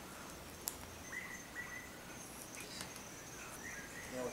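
Quiet outdoor evening ambience: a faint, steady high insect whine, a few short chirps, and one sharp light click just under a second in.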